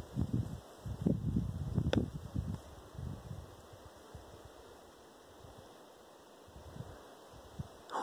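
Wind buffeting a phone's microphone in irregular low rumbling gusts during the first three seconds, with a short sharp click about two seconds in, then dying down to a low, quiet outdoor background with a few small gusts near the end.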